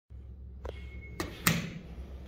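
Sounds around a 1990 Dover elevator: a steady low hum and a brief faint high beep just before a second in. Three sharp clicks come in quick succession, the loudest about one and a half seconds in.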